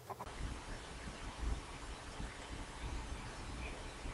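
Faint steady hiss with a low rumble: background noise only, with no distinct sound event.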